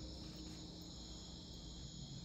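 Faint, steady chirring of crickets at night, a continuous high-pitched drone with no pauses.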